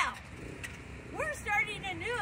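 A woman speaking, with a steady low rumble of street traffic underneath.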